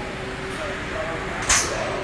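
Battery factory floor background with faint distant voices; about one and a half seconds in, one short sharp hiss cuts through.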